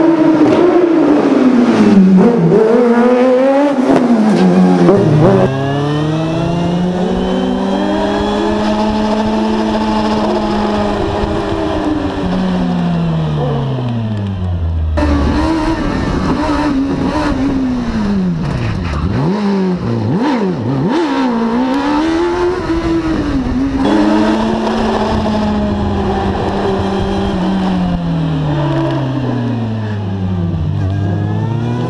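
Kawasaki ZX-12R inline-four motorcycle engine in a Fiat 500 race car, its revs rising and falling again and again as it accelerates and slows between slalom cones. Heard first from the roadside, then from a camera mounted on the car's body from about five seconds in.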